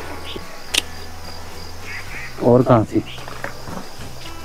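Steady high-pitched insect trill in a garden, with one sharp click about a second in.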